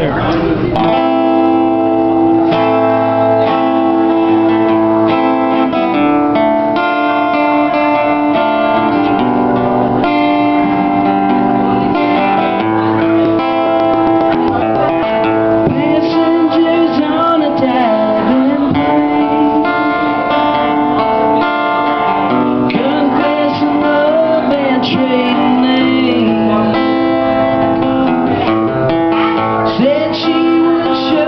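Acoustic guitar played live, strummed chords ringing steadily, with a voice singing over it from about halfway through.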